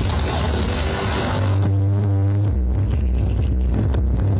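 Electronic dance music playing loud through towering outdoor sound-system speaker stacks, heavy on bass. About a second and a half in, the treble drops out and deep sustained bass notes take over, stepping lower about a second later.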